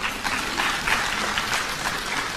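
Audience applauding: a dense round of many hands clapping.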